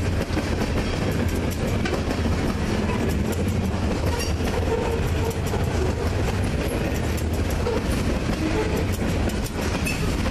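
Freight train cars rolling past at trackside: a steady rumble of steel wheels on rail with clickety-clack over the rail joints, and a few short wheel squeals near the middle.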